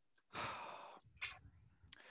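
A person's sigh: one audible exhale of breath that fades out, followed by a brief short breath sound.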